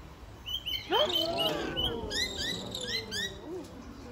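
Birds chirping: a quick run of short high notes, then several rising chirps in a row.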